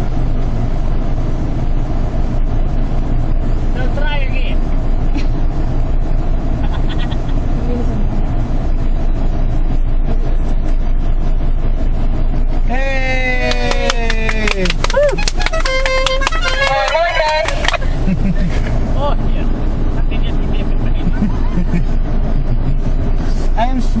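Steady low rumble of an off-road 4x4's engine working through mud. About halfway through, a voice lets out a long shout that falls in pitch and wavers for a few seconds.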